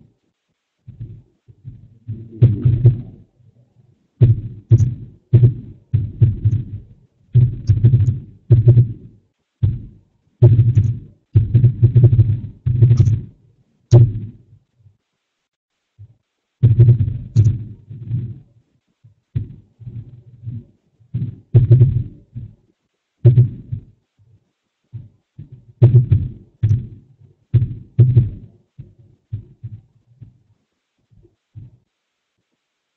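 Keyboard typing picked up by the microphone as irregular runs of dull thuds and sharp clicks, in bursts of a second or so with short pauses between them.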